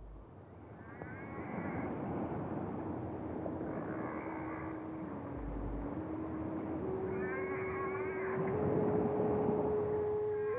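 Soundtrack sound effects: a swelling rushing noise with a held tone that steps up in pitch several times. Short gliding cries come at intervals, about a second in, around four seconds and again near the end.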